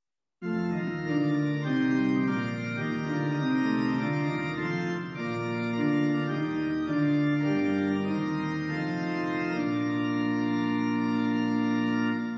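Organ playing the introduction to a hymn in slow, held chords that change every second or so, starting about half a second in.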